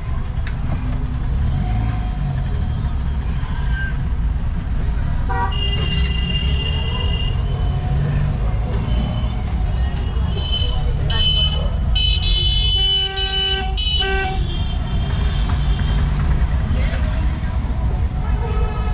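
Street traffic heard from inside a moving vehicle, with a steady low engine and road rumble. Horns honk over it: one long horn about five and a half seconds in, then a run of short horn blasts between about ten and fourteen seconds.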